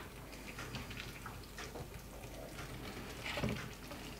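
Soft, quiet wet pattering and faint spoon ticks as a chunky vegetable and tomato filling is spooned onto lasagna sheets in a baking tray.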